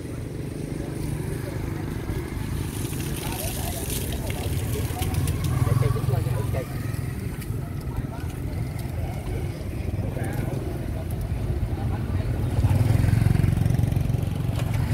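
Street traffic: a low rumble of motorbikes passing, swelling twice, once around the middle and again near the end.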